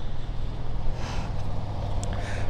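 Onan 5.5 kW gasoline generator running steadily, a constant low hum.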